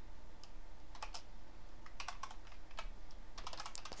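Typing on a computer keyboard: scattered keystrokes, with a quick run of keys near the end.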